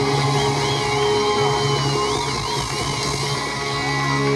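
Live band playing an instrumental passage through the stage PA, with steady bass notes and a high held note over them that bends up and down several times.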